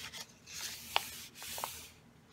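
Hand rubbing and sliding across the paper pages of an open coloring book, a dry rustle with a sharp tick about a second in.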